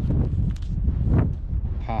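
Wind buffeting the microphone, a steady low rumble, with a brief voice near the end.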